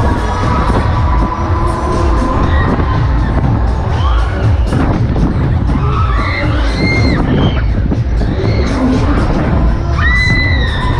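Loud fairground dance music with a heavy bass beat from the Break Dance ride's sound system, with riders and crowd shouting and cheering over it.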